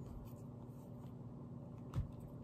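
Faint rubbing and handling of a plastic skincare container, with one sharp click just before the end, over a low steady hum.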